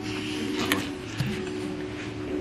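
A smartphone handled on a hard tabletop, giving a couple of small clicks, over a steady low electrical hum.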